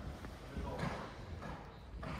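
Hoofbeats of a horse moving past on an indoor arena's sand footing, dull irregular thuds, with a voice in the background.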